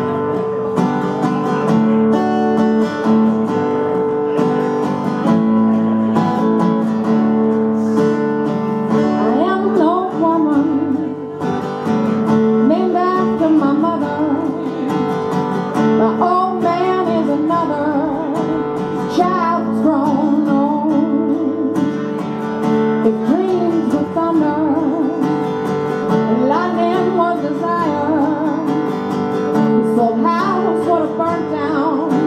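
Live acoustic guitar strummed steadily, playing alone for the first several seconds, then accompanying singing that comes in about nine seconds in.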